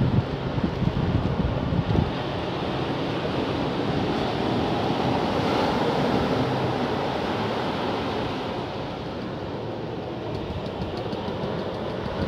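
A steady rush of ocean surf and wind on the microphone that swells through the middle and eases toward the end.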